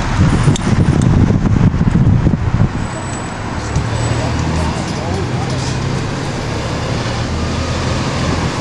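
Tour bus running along a road, heard from its upper deck: engine drone and road noise. For the first couple of seconds rough low buffeting and a few clicks lie over it, then it settles into a steady low hum.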